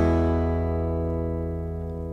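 An open E major chord on an acoustic guitar, strummed once just before and left ringing, slowly fading.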